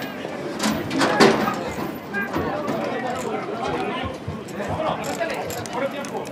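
Men talking and calling out, unintelligible, around a horse-racing starting gate, with a few sharp knocks about a second in.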